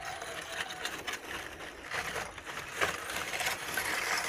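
Lumps of water-quenched wood charcoal scraping and clinking against each other as they are rummaged and pulled out by hand from a metal kiln, a busy irregular rustle of small clicks.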